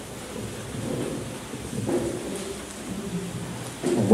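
Room noise of a large hall between speakers: faint, indistinct murmuring voices, rustling and a low rumble, with no clear sound standing out.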